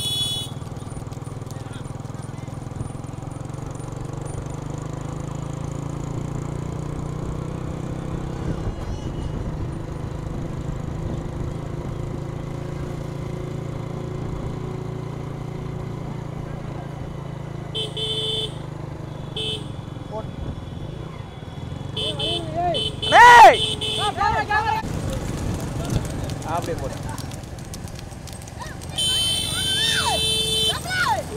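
A pack of motorcycles running slowly behind the bulls, their engines humming steadily, with horns tooting in short bursts several times in the second half. A loud shout rings out about two-thirds of the way in.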